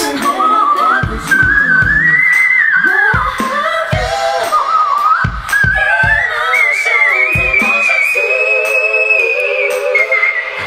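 Live female pop vocal singing very high whistle-register runs over a band with drum hits. It climbs to a long, steady high note held from about seven seconds in.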